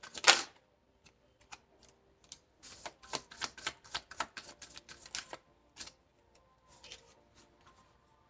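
A deck of tarot cards being shuffled by hand, an irregular run of quick snaps and clicks as the cards slap together. It opens with a louder clatter, is busiest in the middle, and thins out to scattered clicks near the end.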